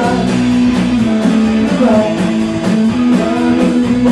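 Live rock band playing loud, guitar-led music with a steady beat.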